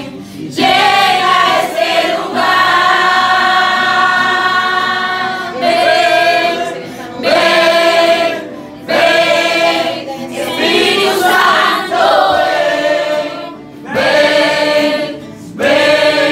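A congregation of men and women singing a worship song together, loud, in sung phrases broken by short pauses.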